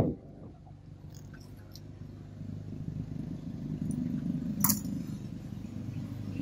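A low engine drone that grows louder toward the middle, with one sharp click about four and a half seconds in.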